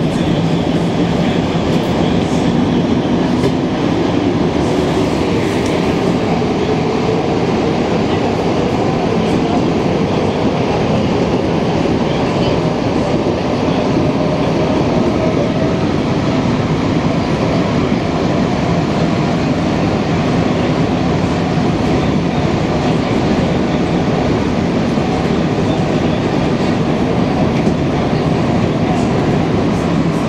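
Montreal Metro MR-63 rubber-tyred train running through a tunnel, heard from inside the car: a loud, steady rumble with a motor whine that rises in pitch over the first fifteen seconds or so as the train picks up speed, then holds steady.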